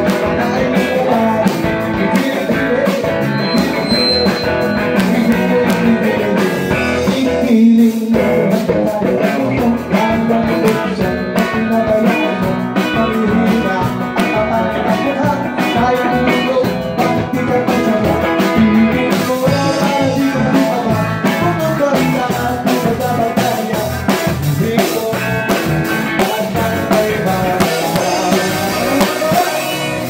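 Live rock band playing: electric guitars, bass guitar and drum kit.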